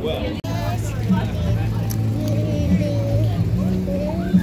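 A young child's voice and street chatter over a steady low vehicle engine hum, with a brief dropout in the sound about half a second in.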